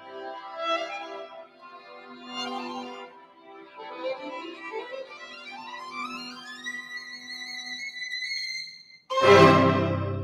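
String chamber orchestra playing a soft sustained passage in which a violin line climbs to a held high note. About nine seconds in, the full orchestra plays a sudden loud chord with deep bass that rings on into the hall.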